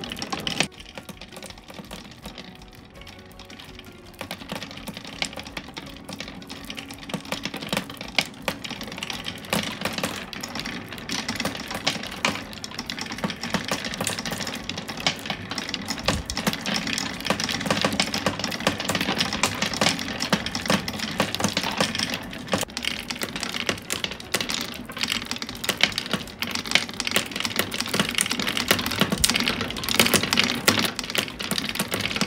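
Glass marbles clicking and rattling through a wooden marble machine: knocking against each other at the base of the lift wheel, riding up the wheel and rolling around a wooden bowl. The clatter is sparse for the first few seconds, then grows into a busy, continuous stream of clicks from about four seconds in.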